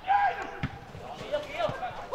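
Footballers shouting to each other on the pitch, with a couple of dull thuds of the ball being played.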